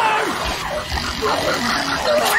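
Movie sound effects of a swarm of small compsognathus dinosaurs, many quick chirps and squeals as they attack a man, with his cries mixed in.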